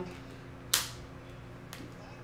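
A tarot card snapped down onto the table with a single sharp slap about three quarters of a second in, and a fainter tick of card on card near the end.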